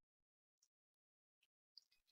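Near silence, with one faint brief click near the end.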